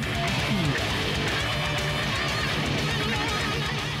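Electric guitar playing a metal-style lead lick with a pitch glide early on, over a backing track with a fast, steady low pulse.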